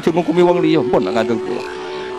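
A man talking in a short burst of speech, then a steady held tone in the second half, over soft background music.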